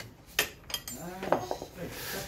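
Two sharp metallic clinks of tools and parts at the rear disc brake caliper of a Yamaha XMAX300 scooter during a brake pad change, followed by a brief murmur of a voice.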